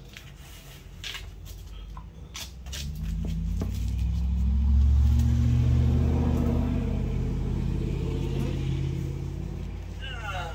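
A motor vehicle's engine rumbling past. It swells to its loudest about five seconds in, then slowly fades. A few sharp clicks of tools or parts being handled come in the first three seconds.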